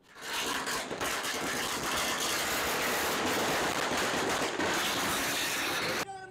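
A string of firecrackers going off: a dense, continuous crackle of rapid small bangs that starts suddenly and holds steady.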